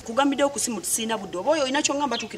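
Speech only: a woman talking animatedly in a fairly high voice.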